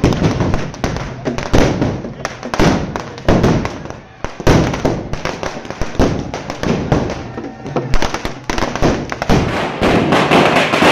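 Firecrackers bursting in a quick, irregular string of bangs that keeps going, with a brief lull about four seconds in.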